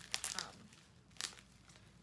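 Clear plastic wrapped around a plant's sphagnum-moss root ball crinkling as it is handled: a few short crackles in the first half second and one more just after a second in.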